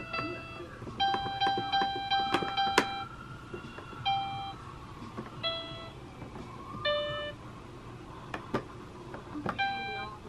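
A baby's electronic activity-cube toy plays short electronic notes at different pitches as its lit do-re-mi buttons are pressed, with a longer run of notes about a second in. Clicks of the plastic buttons are heard between the notes.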